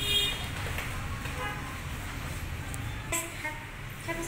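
Steady low rumble with a short, high-pitched toot at the very start and faint voices in the background.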